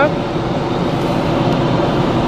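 Steady car cabin noise as the car pulls away from a stop: engine and road noise heard from inside, as an even hiss.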